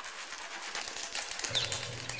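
A dense, fast, high-pitched crackling rustle of many tiny clicks, followed near the end by a short high chirp.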